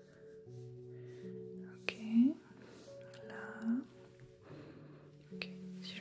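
Soft background music of held notes that change every second or so, with faint breathy whispering and a couple of sharp clicks.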